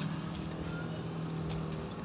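A steady low motor hum over a noisy outdoor background, fading out near the end.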